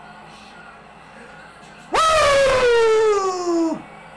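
A man's long celebratory yell, starting about two seconds in: it jumps up, then slides steadily down in pitch for nearly two seconds before breaking off.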